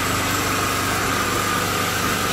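Tiger-brand 2500-watt petrol portable generator running steadily, with a steady high whine over the engine hum.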